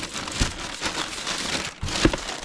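Thin plastic shopping bag crinkling as a hand rummages in it and lifts a boxed book set out, with a light knock about half a second in and another near the end.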